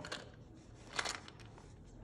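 Faint handling sounds from a felt hat being pressed onto a fabric-covered craft doll, with two short ticks: one at the start and one about a second in.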